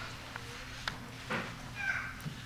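Faint clicks and rustling of papers handled on a wooden pulpit, with a short high squeak near the end.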